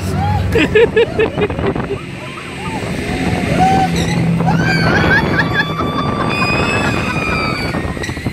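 Children laughing and shrieking on a moving amusement-park ride: a quick run of laughter in the first two seconds, then high squeals and held screams from several voices over a steady low hum.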